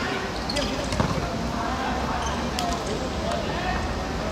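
A football being kicked and bouncing on a hard court surface: a few sharp thuds, the loudest about a second in. Faint calls from players are heard under it.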